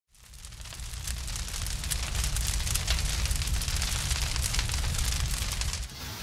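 Fire crackling with a low rumble, a dense run of small pops over a steady roar, fading in over about the first second.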